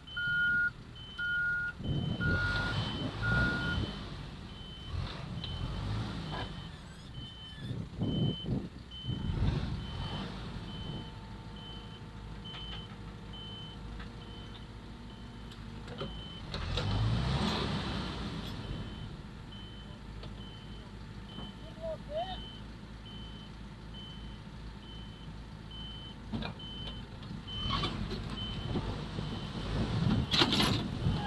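Backhoe loader's reverse alarm beeping steadily, about two beeps a second, with a second beeper also sounding for the first few seconds. Under it, diesel engines run and surge several times under load as the mired tractor is towed out of the mud.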